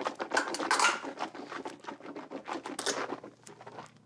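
Mouthwash being swished around in a man's mouth: a rapid, wet clicking slosh that dies away near the end.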